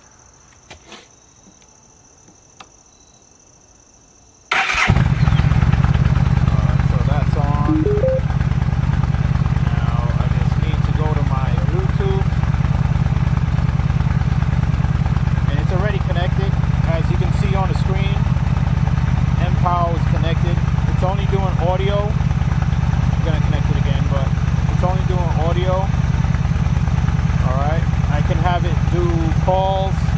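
A Yamaha V-Star 1300's V-twin engine is started about four and a half seconds in and settles into a steady idle. A few small clicks come before it starts.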